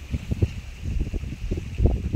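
Wind buffeting the microphone in uneven gusts, giving a rumbling, blustery noise.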